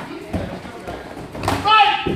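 Thuds of sparring fighters' strikes and feet on a padded mat, with a sharper knock about one and a half seconds in, followed at once by a loud, short, high-pitched shout.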